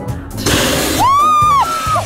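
A short burst of hissing noise, then a woman's high-pitched scream lasting about a second, rising, held and falling away, loud enough to clip, over steady haunted-house background music.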